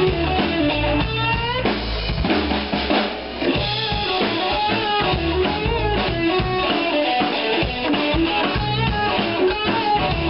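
Live blues-rock band playing an instrumental passage: a Fender Stratocaster electric guitar plays a lead line with bent and wavering notes over drum kit and bass guitar. There is a brief drop in loudness about three seconds in.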